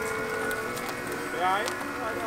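A small car pulling slowly away: a steady hum with a few light ticks. A short spoken "ja" comes about one and a half seconds in.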